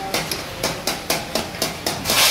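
Steel tongs and ladle clinking against a steel karahi, about four knocks a second, over the hiss of chicken and tomatoes frying in hot oil.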